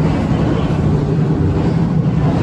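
Steady low rumbling hum of background noise, with no distinct events.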